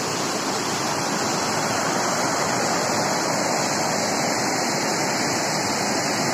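A fast river rushing steadily over rocks and through rapids.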